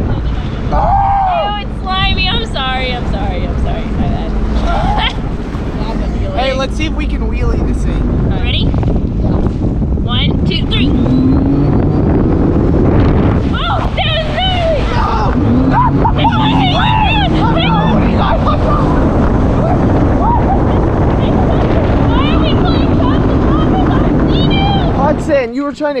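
Sea-Doo personal watercraft running at speed across a lake, its engine and water rush heard with wind on the microphone, and occasional shouts and laughter from the riders over it. The sound changes abruptly about a second before the end.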